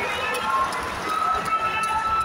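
Indistinct voices talking over the busy background noise of a crowded arena.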